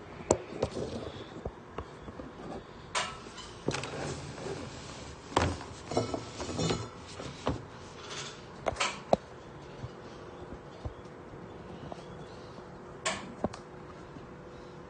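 Scattered knocks, clicks and clatters of kitchen things being handled and moved, irregular and spread through the stretch, with a sharper knock a little before the middle and another just past halfway.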